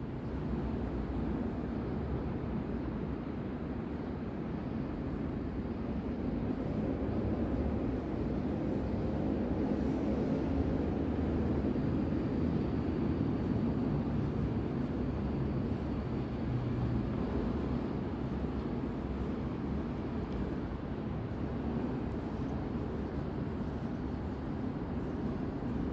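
Steady low background rumble, a little louder around the middle, with a faint thin high tone for a few seconds partway through.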